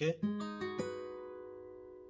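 Capoed acoustic guitar fingerpicking a D7 chord: the thumb takes the bass note and the fingers pick the higher strings, a few notes in quick succession. The chord is then left to ring and slowly fade.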